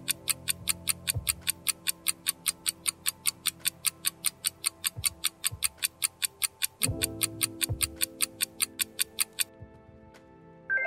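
Countdown timer sound effect ticking steadily about four times a second over soft background music; the ticking stops shortly before the end.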